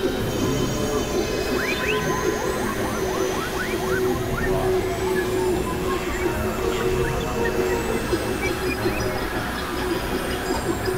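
Experimental synthesizer drone music: a steady held tone over dense, rumbling noise, with clusters of short rising squealing chirps scattered through it.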